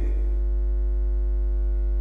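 Steady low electrical mains hum on the recording, with a fainter buzz of evenly spaced overtones above it.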